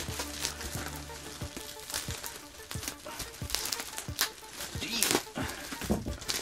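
Black plastic garbage bag crinkling and rustling in irregular bursts as it is pulled at where it is taped down.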